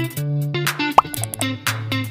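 Channel-intro background music of short plucked notes over a steady bass line. About a second in, a short rising 'bloop' pop sound effect plays, the loudest moment.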